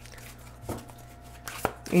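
A deck of oracle cards being handled and shuffled in the hands: a few soft rustles and one sharp tap near the end, over a faint low hum.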